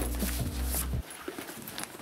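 A low steady drone cuts off about a second in, leaving light knocks, clicks and rustling as a handbag and the papers inside it are handled.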